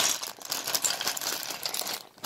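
Clear plastic bag of Lego bricks crinkling as it is handled, with the plastic bricks inside rattling and clicking against each other.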